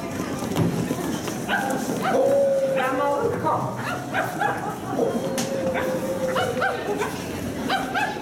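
People in dog costumes imitating dogs with their voices: short yelps and yips, and two long held calls, one about two seconds in and one from about five to seven seconds.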